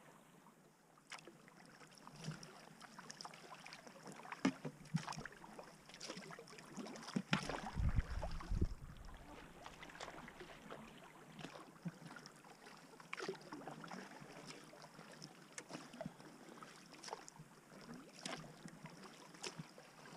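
Double-bladed kayak paddle stroking through creek water: irregular splashes and drips as the blades dip in and lift out, alternating sides. A brief low rumble about eight seconds in is the loudest moment.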